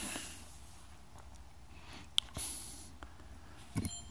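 Quiet room with faint handling noises: a single sharp click about two seconds in and a few soft rustles and ticks.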